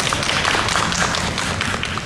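Audience applause: many hands clapping at once in a dense, steady patter.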